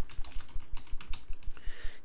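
Typing on a computer keyboard: a quick, uneven run of key clicks as a short phrase is typed.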